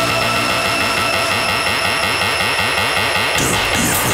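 Electronic intro music: held synthesizer tones over a fast run of repeating rising sweeps in the low register. About three seconds in, it changes to a noisier, airy swell.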